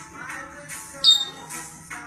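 Background music with a steady beat and a shaker or tambourine-like jingle. About halfway through, a short, loud, high-pitched chirp stands out above it.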